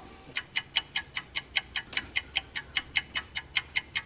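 Clock ticking: a fast, perfectly even run of sharp ticks, about five a second.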